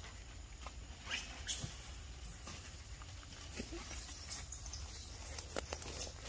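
Long-tailed macaques giving short, high squeaks now and then, mixed with light taps and rustling of dry leaves on stone.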